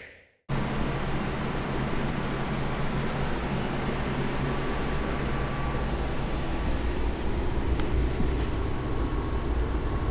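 Desktop computer's cooling fans running steadily with a low hum, starting about half a second in; the machine is busy plotting Chia.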